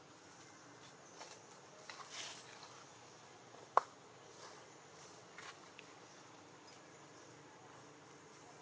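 Faint background ambience with a few short, soft noises and one sharp click a little before the middle.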